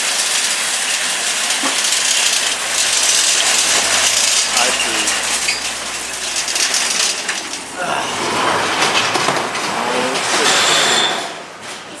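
A long line of nested metal shopping carts rolling and rattling over pavement, pushed by a battery-powered cart pusher. The clatter dies down near the end.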